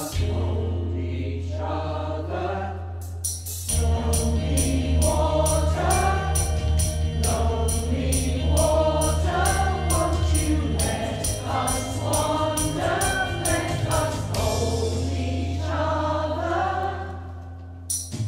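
Mixed-voice community choir singing over an accompaniment with a sustained bass. A steady beat comes in about four seconds in and stops a few seconds before the end.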